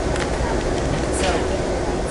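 Steady low rumble and rolling noise heard inside an Amtrak Coast Starlight passenger car running at speed, with a couple of brief rattles.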